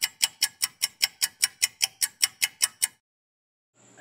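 Steady clock-like ticking, about five sharp ticks a second, stopping about three seconds in.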